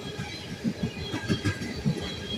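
Freight train of tank cars rolling past, wheels clattering on the track with several heavy knocks in the second half.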